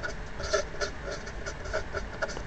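Felt-tip marker writing on paper: a quick run of short strokes, about four a second.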